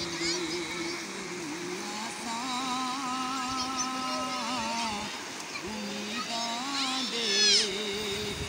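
A man singing without accompaniment into a handheld microphone, in long, wavering held notes, over the steady rush of a shallow, rocky river.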